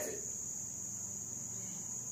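A steady high-pitched tone that holds one pitch without a break, over a faint low hum.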